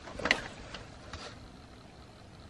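Paper sandwich wrappers and a cardboard food box being handled: a few short crinkles in the first second or so, then only faint steady hiss.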